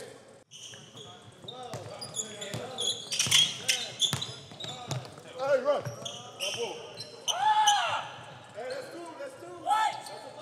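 Basketballs bouncing on a gym court, sharp repeated strikes, with players' voices calling out over them; a loud shout comes about seven and a half seconds in.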